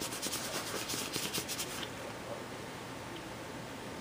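Paper towel rubbed in quick short strokes over a paper tag, wiping wet ink off it, stopping about two seconds in.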